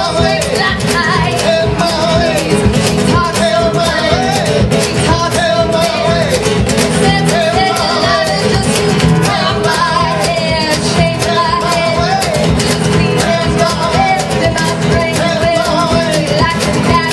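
Live band performing a song: a woman singing lead over acoustic and electric guitars, upright double bass and a drum kit.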